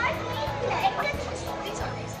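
Background music with a steady low tone, with indistinct voices over it.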